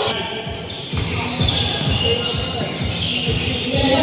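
A basketball being dribbled on an indoor court, a run of bounces, with voices on and around the court.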